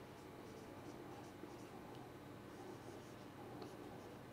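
Whiteboard marker writing on a whiteboard: faint, irregular scratching strokes.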